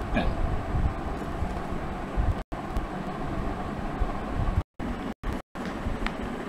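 Steady low, rumbling background noise, broken by several brief dropouts where the sound cuts out completely, one about halfway and a few close together near the end.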